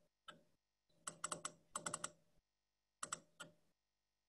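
Faint typing on a computer keyboard: a few short runs of quick key clicks, the busiest between one and two seconds in and another at about three seconds.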